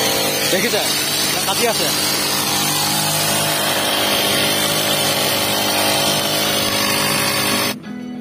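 Petrol brush cutter running steadily at working speed, its nylon-line head cutting grass along a kerb. The engine sound cuts off abruptly near the end.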